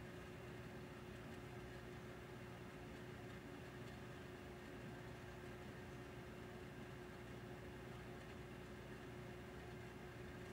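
Faint room tone: a steady hiss with a constant low hum, unchanging throughout.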